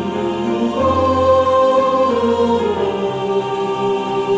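Mixed choir singing a Korean sacred anthem in four-part harmony, with piano accompaniment.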